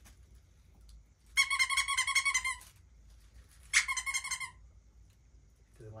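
A squeaky dog toy squeezed twice: a long warbling squeak of about a second, then a shorter one. It is a sound the puppy does not like very much.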